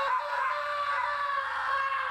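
A person's long scream, held at one steady pitch for about two seconds, then cut off.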